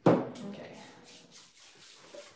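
A white textured pottery lid knocked and slid across a paper-covered worktable: a sudden knock, then a short scraping rub that fades within about half a second.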